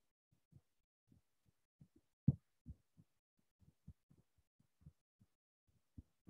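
Faint, irregular low thumps and bumps, a dozen or so short knocks at uneven intervals, the loudest about two and a quarter seconds in.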